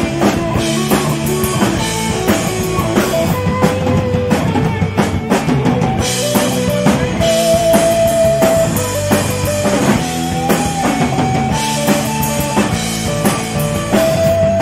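Live punk rock band playing a song, heard through a phone microphone from in front of the stage: distorted electric guitar, bass and a driving drum kit, with a singer's held notes over the top.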